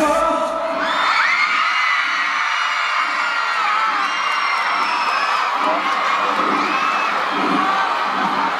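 The song's music stops about a second in, leaving a large crowd screaming and cheering in high-pitched shouts at the end of the performance.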